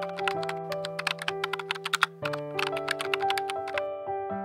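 Rapid keyboard-typing clicks, about ten a second, in two runs with a short break about two seconds in, over gentle piano music: a typing sound effect for on-screen text being typed out.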